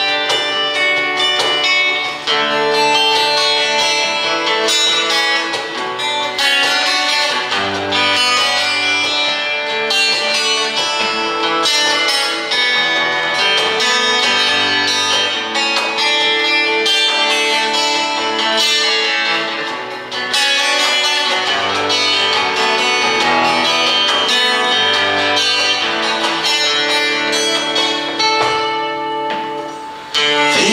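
Two acoustic guitars playing the instrumental introduction to a song, with deeper bass notes coming in about eight seconds in.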